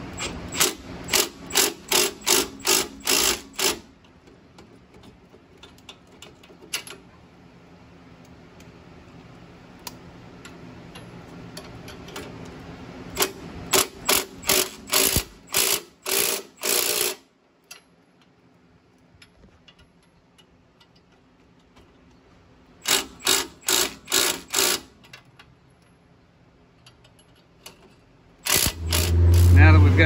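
Ratchet wrench turning the threaded rods of two coil-spring compressors on a Jeep Cherokee's front coil spring, compressing the spring further for removal. It comes in four runs of sharp, even clicks, about three a second, with quieter pauses between them.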